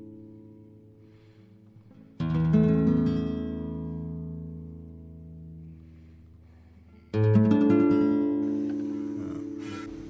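Background music of strummed acoustic guitar chords, each left to ring and fade. A new chord sounds about two seconds in and another about seven seconds in.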